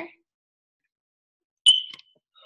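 Dead silence, then about three-quarters of the way through a sudden short high-pitched tone, like a beep, fading over about a third of a second as a recorded voice clip begins playing back.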